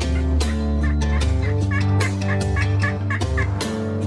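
Turkey calling, a run of about eight short, quick notes starting about a second in, over guitar music.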